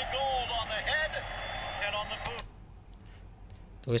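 Televised football match playing through laptop speakers: a voice over steady crowd noise, thin and narrow-sounding. It cuts off abruptly about two and a half seconds in, leaving low room sound.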